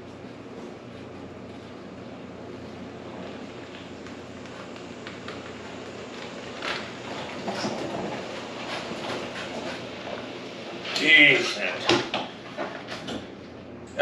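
Electric golf cart driving up and rolling into a garage, its motor quiet under a steady background hiss, with a couple of short, louder sounds near the end as it comes to a stop.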